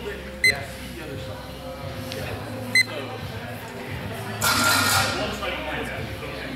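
Longsword bout: two brief, sharp high clinks in the first three seconds, then about four and a half seconds in a louder burst of about a second as the steel blades meet in the exchange.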